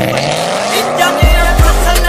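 A car engine revving up, rising in pitch, as part of a hip-hop music track; a little over a second in, the beat comes back with a deep bass and drum hits.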